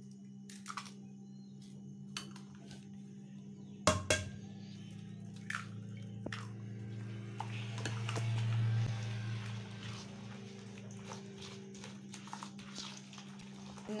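Eggs going into a bowl of soft butter-sugar-oil batter: a few light taps and a sharp crack about four seconds in, then wet squelching as a hand mixes the eggs into the batter, over a steady low hum.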